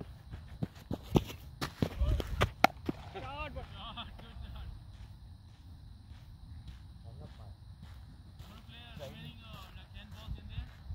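Faint voices talking in the distance over a low rumble on the microphone, with a cluster of sharp knocks about one to three seconds in.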